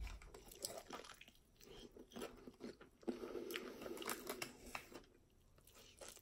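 Faint sounds of a person biting into and chewing a chicken wing, with scattered small clicks and crunches.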